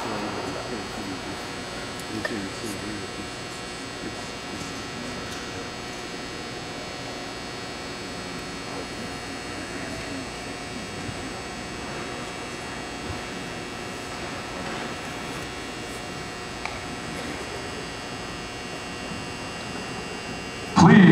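Steady hum in a large indoor arena, with faint distant voices and a couple of small clicks, while the band waits silently on the field before its show.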